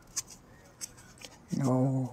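A few short crinkles of a paper sheet being handled and pressed around a PVC pipe, then a man's voice starts about one and a half seconds in.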